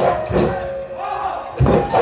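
A Huchori troupe's group shout over dhol drums: a heavy drum stroke near the start and another near the end, with voices calling out together between them.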